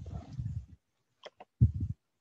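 Low rumbling bumps of desk and microphone handling, with two sharp computer mouse clicks about a second in, then a louder low bump near the end.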